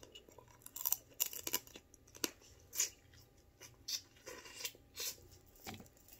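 Close-up eating of boiled crab legs: chewing and wet mouth sounds with irregular, short, sharp clicks and crackles scattered through, as the meat is pulled from the shell with the mouth.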